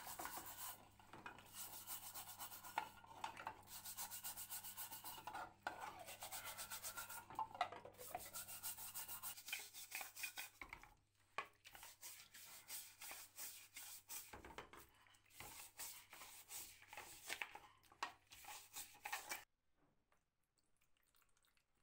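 Stiff plastic scrubbing brush scrubbing a metal heater part wet with soapy water: quick back-and-forth strokes, pausing briefly a few times and stopping abruptly near the end.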